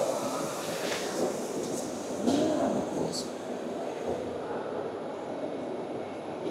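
Steady exhibition-hall background noise with distant, indistinct voices and a few faint clicks.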